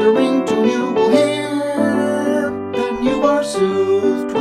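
A man singing a chorus of a 1920s popular song to piano accompaniment.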